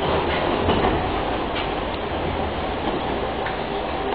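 A Tatra T6A2D tram running, heard from inside the car: a steady rumble of wheels on rails with a few sharp clicks.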